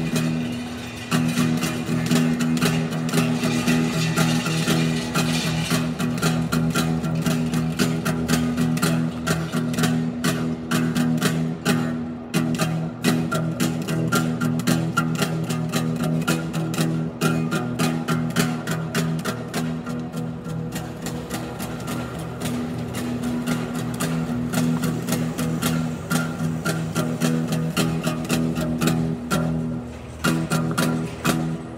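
Acoustic guitar strummed rapidly and continuously, a steady run of quick strokes over low ringing chord notes.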